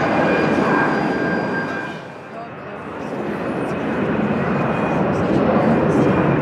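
Jet airliner engines at take-off power. First a Bombardier CS100's turbofans, a roar with a steady high whine, climbing out. About two seconds in the sound dips and breaks off, then a Swiss Airbus A321's engines build up loud again as it lifts off.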